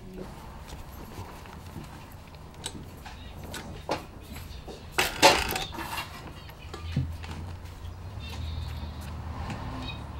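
Industrial post-bed sewing machine stitching boot leather, a fast steady rattle of the needle. A few sharper knocks come about four, five and seven seconds in, and a low hum grows louder in the second half.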